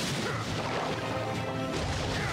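Cartoon fight sound effects, crashes and impacts, over an action music score.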